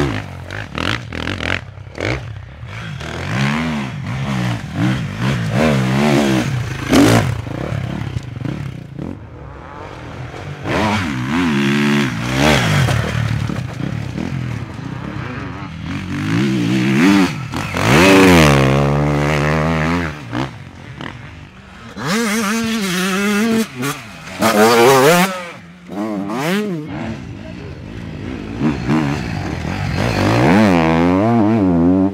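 Enduro dirt bike engines revving hard as riders come through one after another, the pitch climbing and dropping with each throttle and gear change. The loudest passes come about eighteen seconds in and again around twenty-five seconds.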